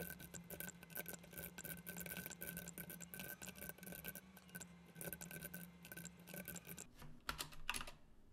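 Computer keyboard typing in a quick, dense run of keystrokes, then a few separate key presses near the end.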